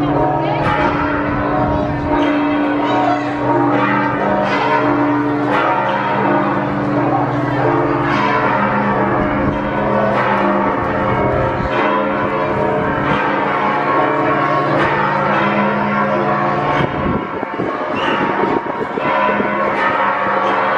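Church bells ringing continuously, with many strokes overlapping into a held, shifting clang, over the chatter of a crowd.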